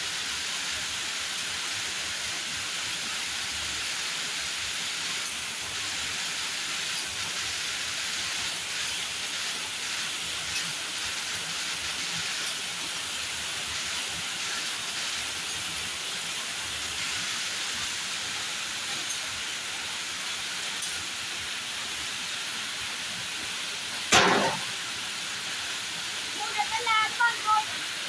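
Yarn cone-winding machine running with a steady hiss, with one sharp knock about three-quarters of the way through.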